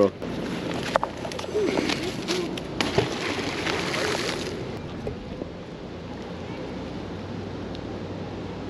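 Water splashing and sloshing, with a louder rush of it from about two to four and a half seconds in, and faint voices underneath.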